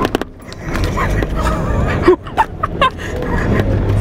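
Small car's engine running with a steady low hum inside the cabin, with two people laughing and a few sharp clicks.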